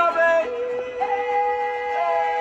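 Mariachi band performing, a male voice singing long held notes over strummed vihuela and guitar.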